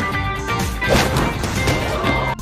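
A long crash and clatter, loudest about a second in, over background music: a basketball thrown hard in a film's cafeteria scene, sending people ducking.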